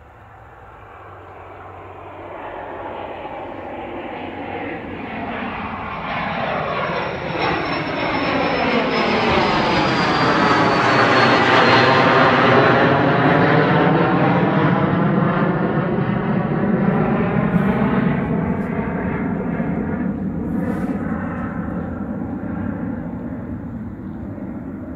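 Small Cessna business jet's turbine engines at takeoff power as it climbs out and passes by. The sound swells to its loudest about halfway through, a high whine gliding downward as it goes past, then slowly fades.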